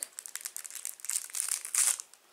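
Clear plastic packet crinkling and crackling as it is handled and pulled open, with the loudest crackle near the end.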